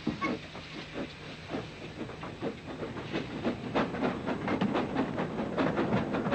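Steam locomotive pulling a train out of a station, its exhaust chuffing in an even rhythm of about three beats a second.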